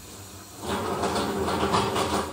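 Water running from a kitchen tap into the sink, coming on about half a second in as a steady rushing hiss.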